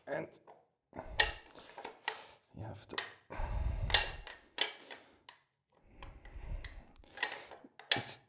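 Steel bolt of a PTRS-41 anti-tank rifle being slid by hand along its open receiver to remove it: a series of metal-on-metal clicks and short scrapes, with a longer scraping rub about three to four seconds in.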